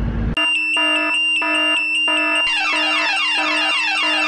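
Electronic alarm sound effect: a steady high beep over a pulsing tone about four times a second, joined about halfway through by quickly repeated falling notes. Before it, a low car-cabin rumble cuts off abruptly a third of a second in.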